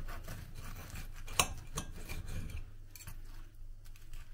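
Knife and fork cutting through a breaded fritter on a ceramic plate: the blade scrapes against the plate, with several sharp clinks of metal on china, the loudest about a second and a half in.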